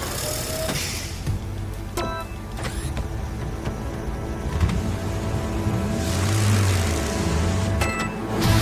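Cartoon background music with an animated monster truck's engine sound effect running and swelling into a louder rumble about six seconds in. Short electronic beeps, one about two seconds in and one near the end, go with the start lights counting down to launch.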